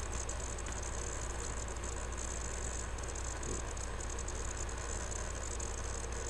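Steady low hum with a constant hiss, with no distinct sound event standing out.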